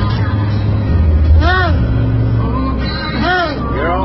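A seal tangled in fishing net cries twice, two short calls that rise and fall in pitch, about two seconds apart. A steady low engine rumble runs underneath.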